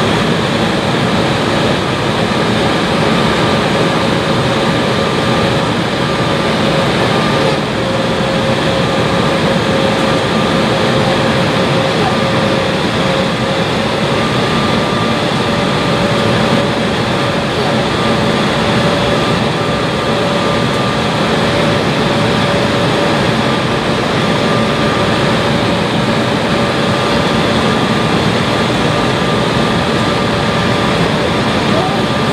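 Steady cabin noise of a J-AIR Embraer 170 in flight on approach, heard from a seat by the wing: a broad rush of airflow and GE CF34 turbofan noise. Two steady tones run through it, a mid-pitched hum and a fainter, higher whine.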